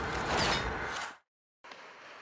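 Broadcast transition whoosh: a rushing swell that peaks about half a second in and cuts off abruptly just over a second in. After a brief dead silence, faint ice-rink ambience follows.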